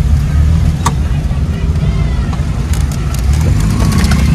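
Steady low engine and road rumble heard from inside a vehicle's cabin while it drives slowly through town traffic, with a single sharp click about a second in.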